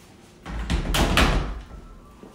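Pair of hinged pantry doors being pushed shut: one loud rushing swell with a dull low thud, starting about half a second in and lasting about a second.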